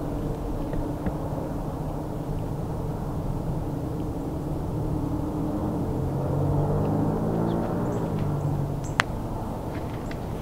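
Low, steady drone of a distant engine, its pitch sliding down as it swells slightly about two-thirds of the way through. A single sharp click sounds about a second before the end.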